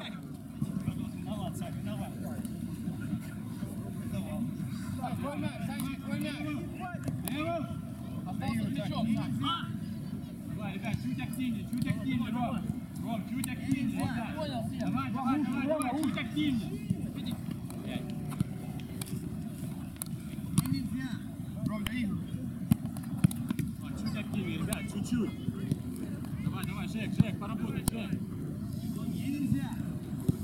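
Players' voices calling out, unintelligible, over a steady low rumble, with several sharp thuds of a football being kicked in the second half.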